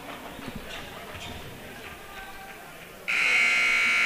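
Gymnasium chatter, then about three seconds in the scoreboard horn sounds a loud, steady buzz, signalling the end of the timeout.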